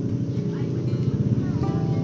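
Yamaha RX-King's two-stroke single-cylinder engine idling steadily with a fast, even pulse.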